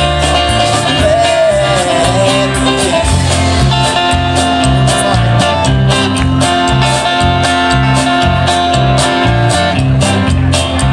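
Live band playing through a PA system: drum kit keeping a steady beat under electric and acoustic guitars and bass notes, heard from the audience.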